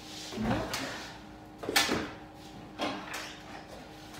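Footsteps on a kitchen floor and a kitchen unit door opened while a carton is taken out: a few separate knocks and thuds, the loudest a little under two seconds in.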